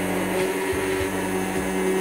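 Electric hand blender running steadily with an even motor hum, its blade whisking curd, gram flour and water into a smooth batter in a glass bowl.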